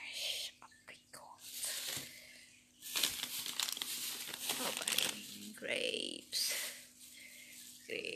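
Plastic food packaging crinkling and being torn open, in several rustling bursts.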